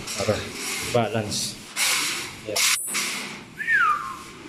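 A man's wordless straining and breathing sounds while lugging a metal wire-grid bed frame, followed by scraping and rubbing noises as the frame is handled, and a short falling squeak near the end.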